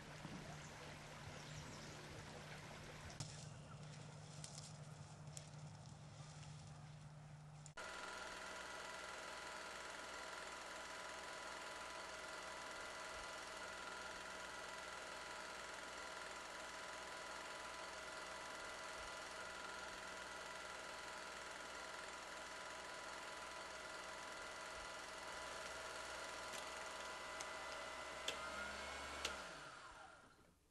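From about eight seconds in, a 16 mm film projector runs with a steady mechanical whir, then slows and stops just before the end. Before it, only a low steady hum with a few faint clicks.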